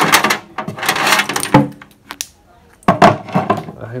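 Hands working audio cables and plug connectors at the back of rack-mounted power amplifiers: rustling with sharp clicks and knocks against the metal chassis, in two spells with a short pause between them.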